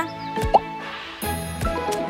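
Light cartoon background music with short sound effects over it: a quick blip about half a second in, then a soft whoosh and a brief high shimmer in the middle, and a small click shortly after.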